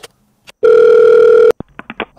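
Telephone sound effect: a click, then a steady dial tone held for about a second that cuts off abruptly, followed by a quick run of light clicks.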